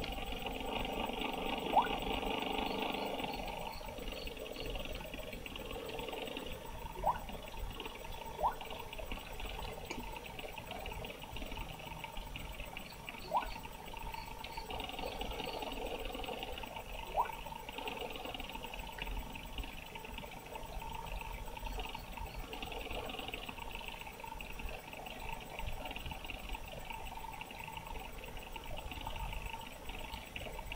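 Computer fan humming steadily, with a few faint clicks scattered through.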